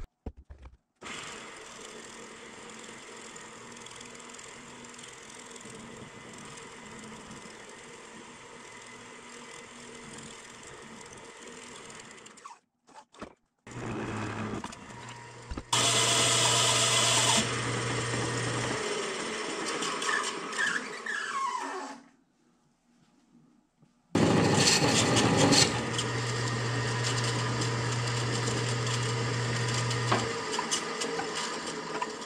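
Wood lathe running with the spinning buckthorn mallet blank being worked against a tool or abrasive. The sound comes in several separate stretches that start and stop abruptly. It is quieter for the first ten seconds or so, then louder with a steady motor hum. There is a short silence a little past the middle.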